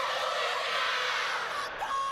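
A women's rugby league team performing a haka: many women's voices chanting and shouting together in unison.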